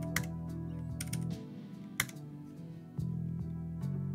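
Computer keyboard typing: scattered keystrokes, with one sharper key press about two seconds in, over steady background music.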